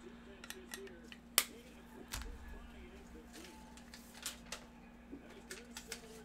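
Hands handling trading cards and their packaging on a table: scattered light clicks and rustles, with one sharp snap about a second and a half in and a dull thump just after two seconds.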